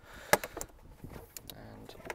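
A sharp plastic click as the BMW X1 E84's pollen filter is unclipped from its housing, followed by a few fainter clicks and handling noise as the filter is worked loose.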